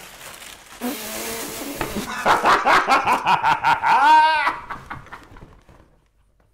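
Rustling as a cardboard shoe box is opened, then a man's laughter in quick pulses that peaks in a high, loud hoot about four seconds in and fades away near the end.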